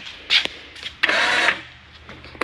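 Electric tongue jack on a travel trailer's A-frame, its motor whirring briefly for about half a second, starting about a second in, as its control button is pressed.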